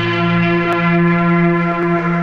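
Film background score: a sustained bell-like chord held steady at a constant pitch.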